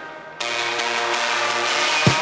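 Rock band music at a break in the song: the band drops out for a moment, then a sustained chord is held without drums.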